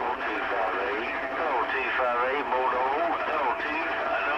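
A CB radio receiving another station: a narrow, distorted voice over steady static, keyed up with a click just before and running without a break. The words are unclear, with the pitch wobbling strongly about halfway through.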